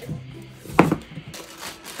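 Cardboard packaging being handled and opened, with one sharp knock a little under a second in.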